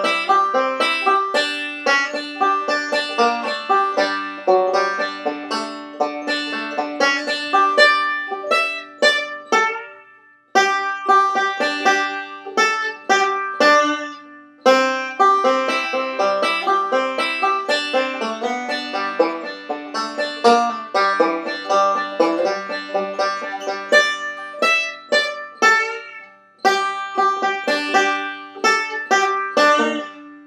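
Five-string resonator banjo played solo in bluegrass style, a continuous stream of rapidly picked notes at a slowed-down practice tempo, with a few brief pauses between phrases.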